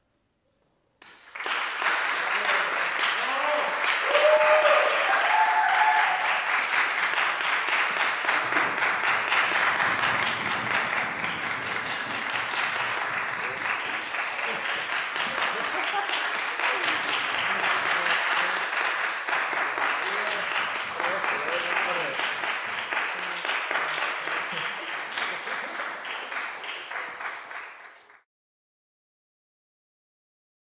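Audience applauding, starting suddenly about a second in and continuing steadily until it cuts off at the end, with some voices calling out in the first few seconds.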